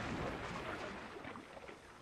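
Dying-away splash of logs and a flatbed falling into canal water: water churning and debris settling, fading steadily to near silence.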